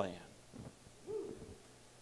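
A man's voice ending a spoken word, then a pause with faint room tone and a brief, soft hum-like tone about a second in.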